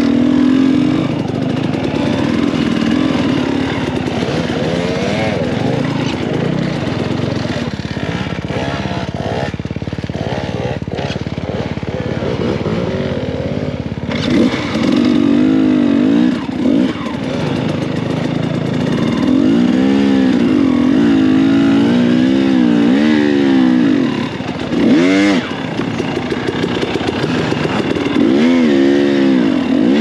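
Dirt bike engine being ridden off-road, its pitch rising and falling over and over as the throttle is opened and shut. It runs lower and rougher for a few seconds before the middle, then revs up and down again repeatedly through the second half.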